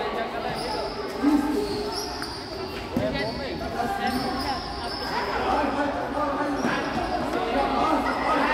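A futsal ball is kicked and bounces on a hard indoor court, with a sharp thud about a second in and another at three seconds, ringing in a large gym over the shouts of players and spectators.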